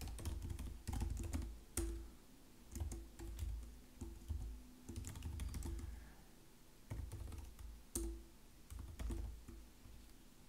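Typing on a computer keyboard: irregular bursts of keystrokes with short pauses between them, some strokes carrying a dull low thud.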